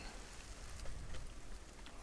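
Faint steady background hiss with a low rumble and a few soft ticks, in a pause between hushed voices.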